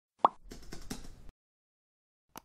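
A single short pop sound effect from the channel's intro, followed by a few faint clicks over the next second.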